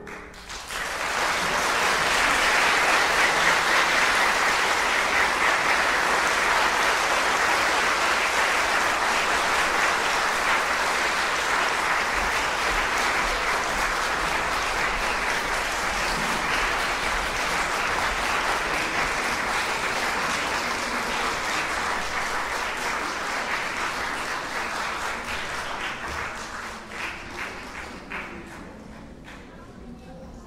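Audience applauding, starting about half a second in, holding steady and thinning out near the end.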